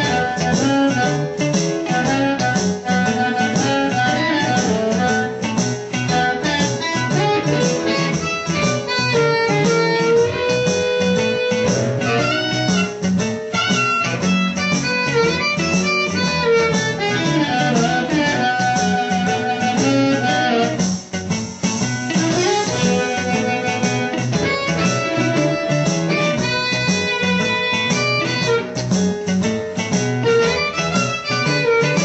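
Amplified blues harmonica, an A harp played in third position through a Turner CX microphone with a 99S556 element, with bent, sliding notes over a guitar backing in B.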